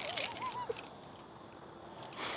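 A brief jingling, clicking rattle at the start, then a short wavering tone, then quiet outdoor background.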